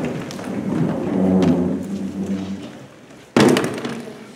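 Chairs scraping and shifting on a wooden gym floor as a roomful of people stand up, with a loud thump about three and a half seconds in.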